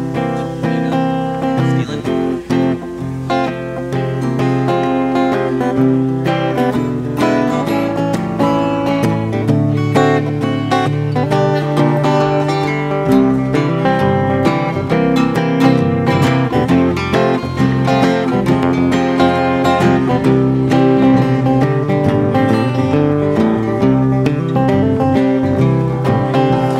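Acoustic guitars playing a strummed instrumental intro to an old jug-band blues song, with the tune picked over the rhythm.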